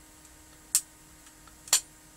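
Two sharp snaps about a second apart as pliers cut through the tabs of the brown plastic sleeve around an X-ray tube.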